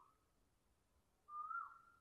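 Near silence, with a faint high whistle-like tone held for about half a second near the end.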